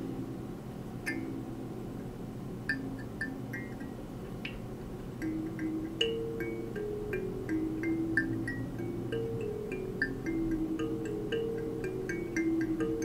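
Box kalimba's metal tines plucked by thumb, single notes picked out unevenly, a few a second, each ringing briefly. The instrument has not yet been tuned.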